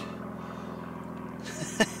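A steady low engine-like hum, with a few light clicks or knocks near the end.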